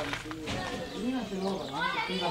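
Several voices calling and shouting at once over an outdoor football pitch: spectators and players calling out during play.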